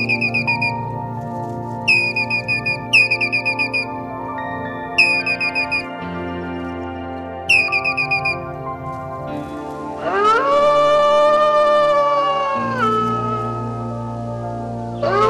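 Eurasian red squirrel chattering in five short bursts of quick, high, falling chirps over soft background music. About ten seconds in, a wolf gives one long howl that rises, holds for a couple of seconds and drops away.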